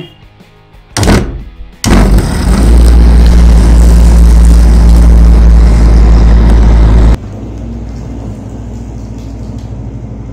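Bajaj mixer grinder motor starting with a short burst about a second in. It then runs loudly and steadily for about five seconds while foam sprays out of the sealed jar, and carries on much quieter for the last few seconds.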